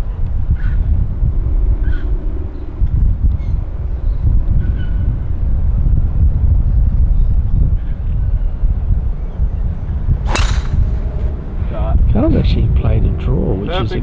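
Wind buffeting the microphone with a steady low rumble, broken about ten seconds in by the single sharp crack of a golf driver striking the ball off the tee. Voices follow near the end.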